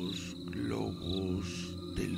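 Night-time background sound bed: crickets chirping in a steady high trill over a low, steady musical drone. About half a second in, a deeper pitched cry slides downward.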